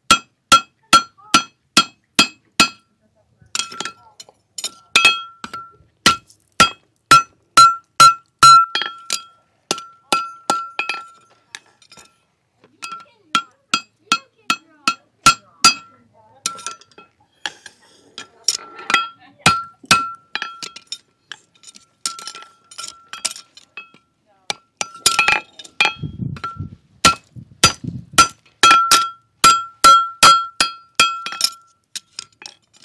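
Farrier's hammer striking a steel horseshoe on a Future 3 anvil: runs of sharp, ringing blows about two a second, broken by short pauses while the shoe is turned and repositioned.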